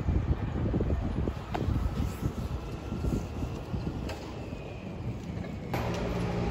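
Wind buffeting the microphone over the low rumble of city street traffic, with faint thin tones drifting above. Near the end the sound changes at once to a steadier low traffic hum.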